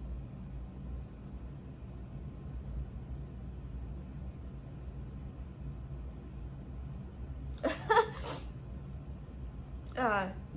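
A fan running with a steady low hum. About eight seconds in, a brief vocal sound from a woman stands out over it.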